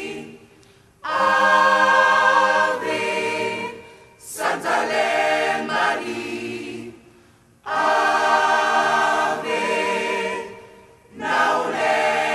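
Large gospel choir singing in full harmony, in four phrases of about three seconds that each begin together, with short breaks between them.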